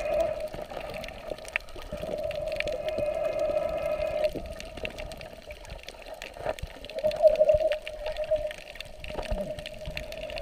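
Water moving and bubbling around the camera while snorkeling, with scattered clicks and a steady hum that fades in and out.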